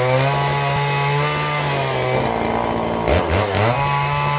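Two-stroke gasoline chainsaw running at high revs while cutting into a wooden timber. A bit past halfway the engine note drops lower, then revs quickly rise back up to the cutting speed near the end.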